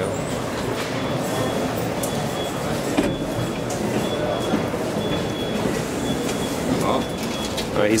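ITK glass passenger elevator running with a steady rumble, its automatic sliding doors opening near the end. A sharp click about three seconds in, and a faint high beep repeating about once a second.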